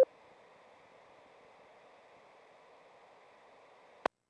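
Faint steady hiss of an open FM radio channel: the repeater's carrier hanging on after its call-sign identification, with no one transmitting. It opens with a click and ends in a short squelch burst as the repeater drops and the receiver goes silent.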